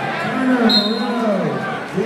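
A man's voice shouting one long drawn-out call, loud and held for over a second, like the "hey" cheers on either side of it.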